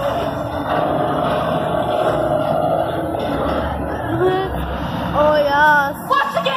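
A loud, steady rumble with a heavy low end, with voices calling out over it from about four seconds in.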